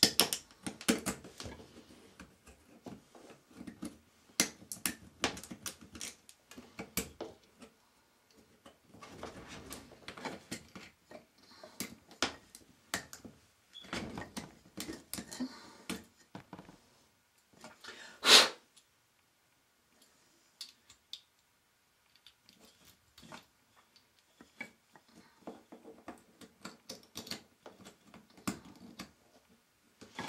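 Irregular clicks and taps of small plumbing fittings being handled and pushed onto a pipe stub at the floor, with rubbing and rustling between them. One louder knock comes a little past the middle, followed by a few quiet seconds and then sparser clicks.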